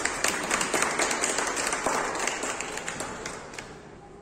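Audience applause: many people clapping together, dying away near the end.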